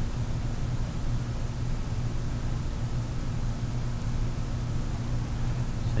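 Steady low electrical hum with an even hiss underneath, unchanging throughout: the background noise of the recording. The palette knife's strokes on the canvas do not stand out from it.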